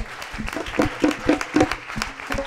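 Audience laughing, with scattered hand clapping.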